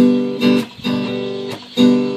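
Acoustic guitar strummed in a steady rhythm, the chords ringing between strokes, with strong strokes at the start and near the end.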